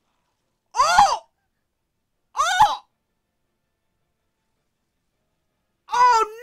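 Two short, high-pitched vocal sounds of dismay from a woman, each falling in pitch, about a second and a half apart.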